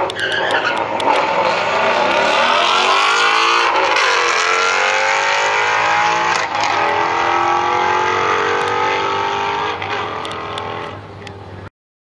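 A 2020 Ford Mustang GT's 5.0-litre V8 at full throttle on a drag-strip launch, climbing in pitch through the gears with upshifts about four, six and a half and ten seconds in, and fading as the car pulls away down the track.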